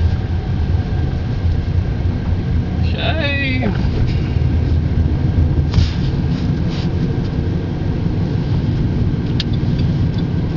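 Steady low rumble of a car's engine and tyres heard from inside the cabin while driving slowly. A brief voice sounds about three seconds in.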